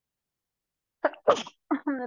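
A woman sneezing once about a second in: a brief catch of breath, then one sharp sneeze.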